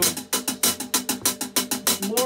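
Drummer playing a quick, even run of stick strokes on the kit, about seven or eight a second, ticking out the sixteenth-note subdivision that sits under a slow groove.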